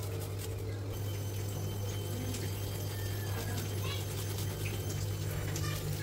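Garlic being grated and scraped on a plastic hand grater over a wooden chopping board: light scratchy scraping and small clicks, over a steady low hum.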